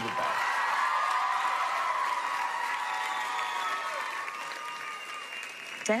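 Studio audience applauding, slowly dying down.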